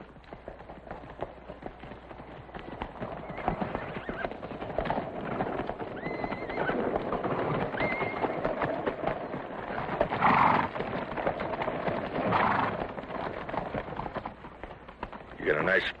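Horses' hooves clattering, growing louder as riders approach, with horses whinnying about ten seconds in and again a couple of seconds later.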